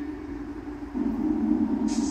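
Film soundtrack playing from a television: a low, steady rumble with no speech that gets louder about a second in.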